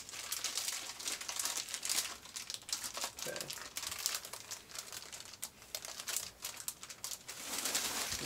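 Bubble wrap and plastic packaging crinkling and rustling as it is handled and pulled out of a box, a dense irregular run of small crackles.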